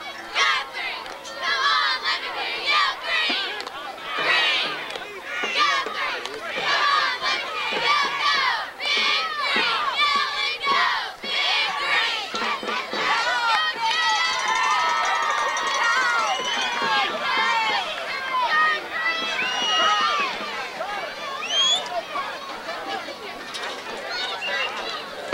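Football crowd in the stands shouting and cheering, many voices overlapping without a break.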